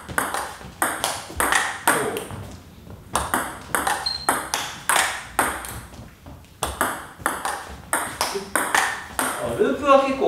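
Table tennis rally: a celluloid-type ball clicking off the bats, one faced with Illusion SP short-pips rubber, and bouncing on the table, about two sharp clicks a second.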